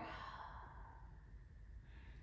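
A faint, breathy exhale from a woman lowering out of a back-bending yoga pose, quiet against the room tone.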